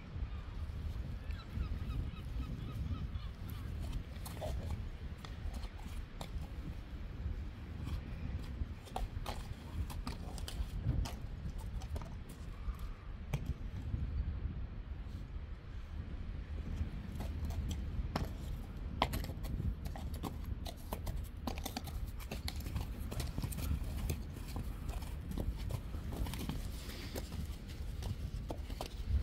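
Wind buffeting the microphone in a low, steady rumble, with irregular sharp clicks and knocks of a Friesian horse's hooves on a concrete yard.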